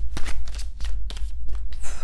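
A deck of tarot cards being shuffled by hand: a quick run of soft clicks and slaps as the cards are passed from hand to hand.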